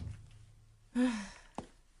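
A woman's short, breathy sigh about a second in, falling in pitch, followed by a faint click.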